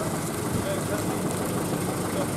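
Ford Courier ute's engine idling with a steady low hum.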